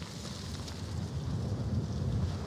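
Low, gusty rumble of wind on the action camera's microphone, mixed with the rolling noise of an electric unicycle's tyre on a gravel trail.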